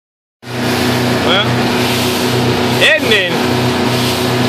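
Powerboat's engine running steadily at cruising speed, with loud wind and water rush over the hull heard from the helm. It starts about half a second in, and a person's voice is heard briefly twice.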